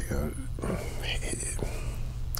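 A man's quiet, breathy hesitation sounds between phrases of speech, half-whispered, over a steady low room hum.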